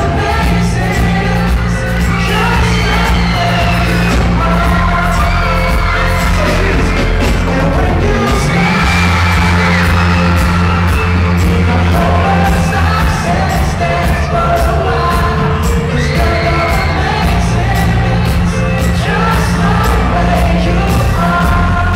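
Live pop band playing loud, amplified music with a male singer, heard from the audience: electric guitar, keyboard, drums and a heavy steady bass line.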